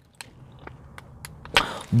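Paper sandwich wrapper handled in the hand: a few faint clicks and crinkles, then a short, louder rustle near the end.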